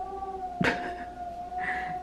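Wind from outside whistling through a ceiling bathroom exhaust vent: one steady, even-pitched whistle, with a short click about half a second in.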